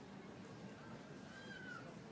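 Quiet room tone, with one faint, short call that rises and then falls in pitch about a second and a half in.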